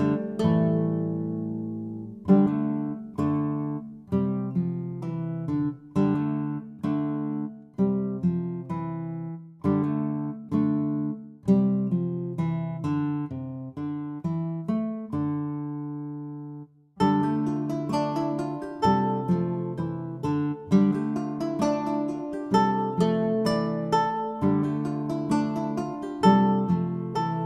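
Background music of plucked acoustic guitar, each note ringing and fading. The music breaks off briefly about seventeen seconds in, then comes back busier.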